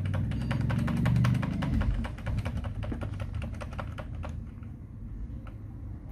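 Rapid repeated key presses on a Dell computer keyboard, about five clicks a second: F2 tapped over and over at power-on to enter the BIOS setup. The tapping thins out after about four seconds, and a low hum runs underneath for the first couple of seconds.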